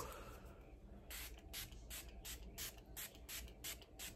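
Makeup setting spray misted from a pump bottle: a run of about nine quick, faint puffs, roughly three a second, starting about a second in.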